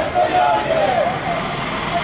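Men shouting protest slogans in loud raised voices, with road traffic beneath.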